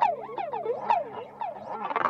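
Instrumental passage of a hip-hop track: a synthesizer lead sliding down and up in pitch in quick repeated swoops, over held low notes.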